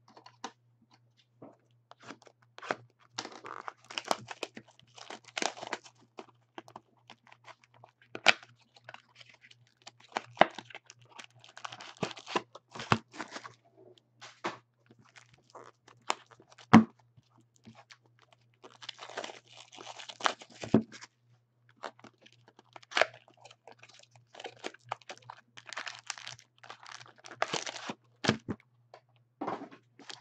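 Clear plastic shrink wrap being torn and crinkled off a sealed box of trading cards, and the box and its foil card packs handled: irregular crinkling and tearing with sharp clicks and taps.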